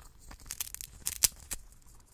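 Hamster gnawing a crunchy snack right at the microphone: quick, irregular crisp crunches and clicks.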